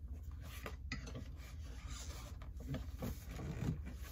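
Parts of a new chair being handled during assembly: plastic and metal rubbing and scraping, with scattered light clicks. A cluster of dull knocks comes in the second half, the loudest about three and a half seconds in.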